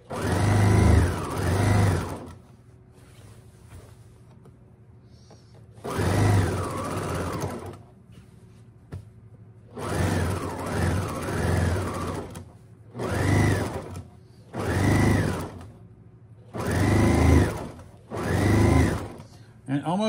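Electric domestic sewing machine stitching a hem in repeated short runs of a second or two, its motor whine rising as it speeds up and falling as it slows, with pauses between runs while the fabric is repositioned.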